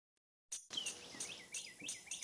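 Birds chirping faintly: a series of short chirps that starts about half a second in.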